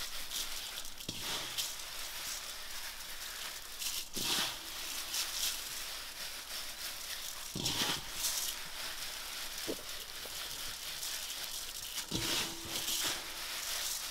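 Hands rubbing Good King Henry seed heads and stems together in a large enamel bowl. It is a steady dry rustling as the seeds are rubbed off the stems, with a few brief louder bumps.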